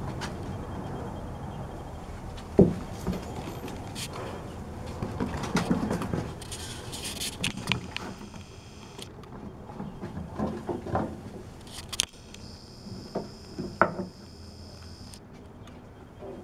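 Two puppies playing on a wooden deck: irregular scuffling and clicking of claws on the boards, with knocks and rustles as toys are grabbed, tugged and dropped. The loudest is a single sharp thump a few seconds in.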